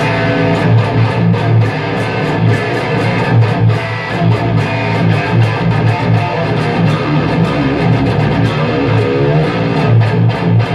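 Electric guitar through a tube amp head and speaker cabinet, heavily distorted, playing a loud chugging metal riff: rapid picked low notes with sharp attacks in a steady rhythm. The guitar was played without being tuned first.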